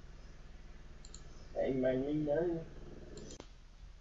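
Computer mouse clicks, one about a second in and a couple close together near three seconds, with a short spoken phrase between them.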